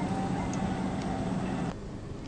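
A steady low hum over a background of hiss, which drops away abruptly near the end.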